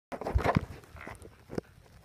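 A dog moving about on a hardwood floor as it goes after a wasp: a cluster of short, sudden sounds in the first half second, a fainter sound around a second in, and a sharp click near the end.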